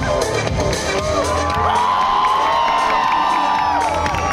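Loud dance music playing over a large crowd cheering and whooping, with one long drawn-out cheer in the middle.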